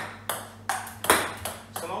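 Table tennis ball struck with a bat, bouncing on the table and rebounding off a plastic-laminate rebound board: a quick run of sharp pings and knocks, about five or six in two seconds, the loudest a little after one second in.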